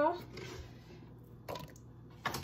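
The end of a spoken word, then faint handling noise as the phone camera is moved, with a single soft knock about one and a half seconds in.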